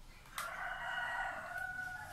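A rooster crowing: one long, held call starting about half a second in and lasting about a second and a half, dropping slightly in pitch at the end.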